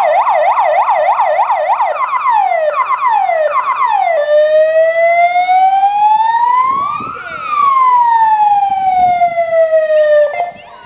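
Fire engine siren sounding loudly. It starts with a fast up-and-down yelp, about four cycles a second, which slows into wider sweeps. Then comes one long wail that rises and falls, peaking about seven seconds in.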